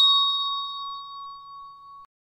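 A hand bell ringing out after a single strike: one clear high note with fainter overtones above it, fading steadily, then cut off suddenly at the end.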